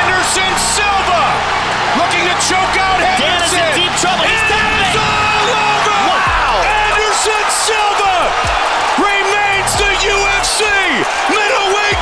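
Arena crowd yelling and cheering, many voices rising and falling at once, mixed with background music that has a steady bass line and occasional sharp hits.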